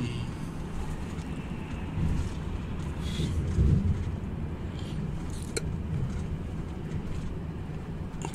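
Renault Magnum truck cruising at about 70 km/h, heard from inside the cab: a steady low rumble of engine and road noise, with one brief click about five and a half seconds in.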